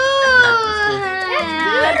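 A long drawn-out vocal cry from one person, held on a single sound whose pitch slowly falls, with a second voice starting over it about halfway through.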